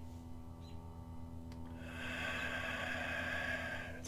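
A man breathing deeply: after a held pause, a slow, soft exhale begins about halfway through. A steady low electrical hum sits underneath.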